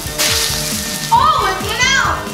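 A short burst of hissing as water is poured onto small flames and puts them out, over background music; a voice exclaims in the second half.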